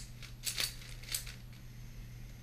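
Plastic 4x4 speedcube being turned by hand mid-solve: quick clacking layer turns, with three sharp clicks, two close together about half a second in and one at about a second, over a low steady hum.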